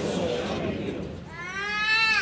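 A short, high cry from a small child, rising in pitch, beginning about one and a half seconds in, over a low murmur of voices.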